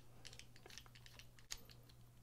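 Faint, scattered small clicks of a screwdriver bit working a screw into a folding knife's handle, with one sharper click about one and a half seconds in.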